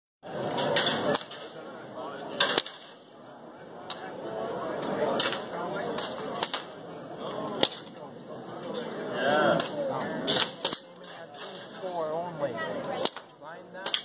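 Gunshots on a shooting range: about a dozen sharp single reports at irregular intervals, some in quick pairs, from more than one shooter.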